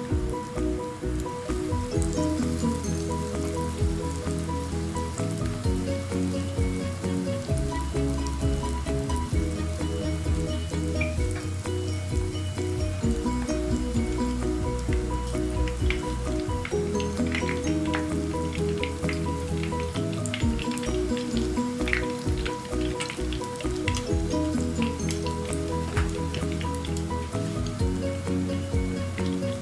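Lumpia-wrapper pastries frying in a pan of hot oil, sizzling with scattered crackles that get busier in the second half, under background music.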